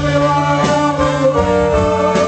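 Live band music with a string section, violins bowing long held notes.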